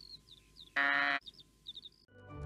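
A sheep bleats once, a short, steady-pitched baa about half a second long near the middle, with light birdsong chirps around it.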